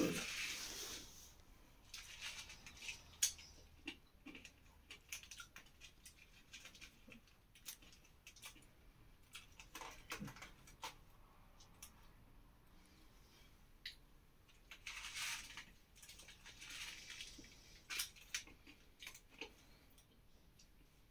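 Small Nerds candy box being handled: faint scattered clicks and rattles of the tiny candies, with a couple of brief rustling bursts past the middle.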